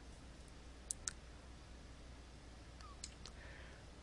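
Faint computer mouse clicks over a low steady hum: two quick clicks about a second in, then two fainter ones around three seconds.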